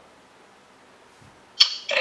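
A pause in the talk with only a faint, steady hiss of room tone. A single sharp click comes about one and a half seconds in, and a man's voice starts right after it near the end.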